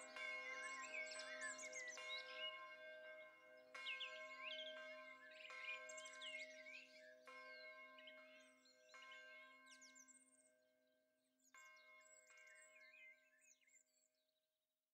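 Bells struck at irregular intervals of a second or two, each note ringing on, with birds chirping over them. It all fades out near the end.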